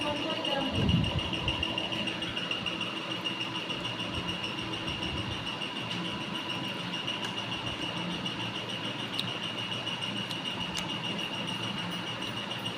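A steady high-pitched whine over a fainter hum, with a low thump about a second in and a few faint clinks of a spoon against dishes.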